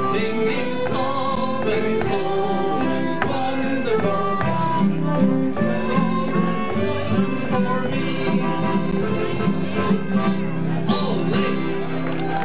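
Live folk dance tune led by an accordion, a melody of changing held notes over a steady accompaniment.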